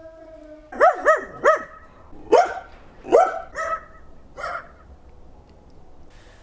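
A dog barking: about seven short barks in quick runs, stopping after about four and a half seconds.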